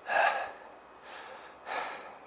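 A man breathing hard, out of breath after running: two heavy gasping breaths, one right at the start and another near the end.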